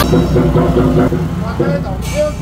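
Street ambience: several people's voices mixed over the steady low rumble of a vehicle engine running.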